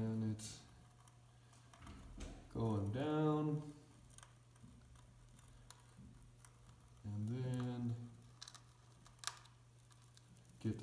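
A man's voice in three drawn-out, wordless 'uhh'-like sounds, over a faint steady low hum from a corded pistol-grip hot knife held in the expanded polystyrene foam of an ICF wall, melting out an electrical box opening. A few faint ticks.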